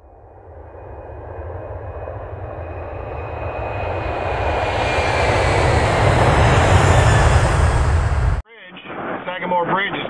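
Jeep driving on a highway, heard from inside the cab: engine rumble with road and wind noise, growing steadily louder over about seven seconds, then cut off abruptly near the end.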